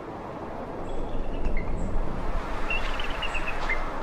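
Outdoor ambience fading up from silence: a steady rushing noise with a low rumble underneath, and small birds chirping, with a quick run of chirps about three seconds in.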